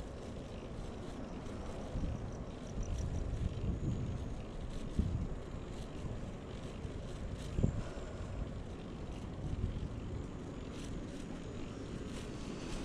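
Wind rumbling on the microphone and bicycle road noise while a YouBike rental bike is ridden along a paved path, with a few bumps and light clicks; the loudest bumps come about five and seven and a half seconds in.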